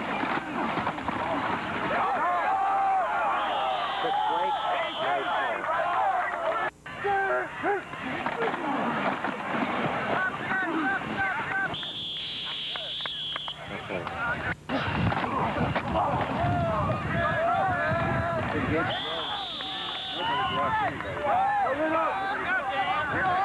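Players and coaches shouting and talking over one another at a football game, with no single voice clear. A referee's whistle is blown three times, each blast lasting a second or two. The sound briefly drops out twice.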